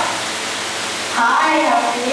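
A steady hiss, then a person's voice, too unclear to make out, beginning a little over a second in.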